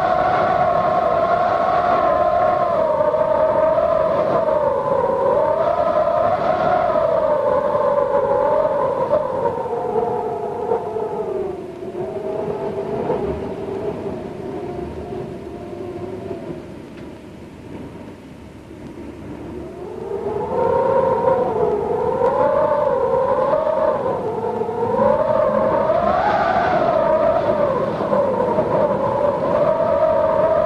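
An eerie wailing tone under the opening titles, wavering and gliding up and down in pitch. It sinks lower and fades about a third of the way in, then climbs back up and swells again.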